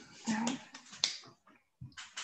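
A brief murmured "mmh" over a video call, then a sharp click about a second in and a short low knock near the end.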